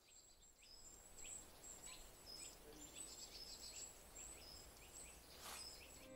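Faint calls of small songbirds: many short, high chirps that slide downward, repeating on and off throughout. A brief click sounds near the end.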